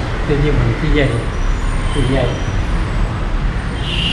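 Steady low rumble of road traffic, with indistinct voices speaking briefly over it near the start and again about two seconds in.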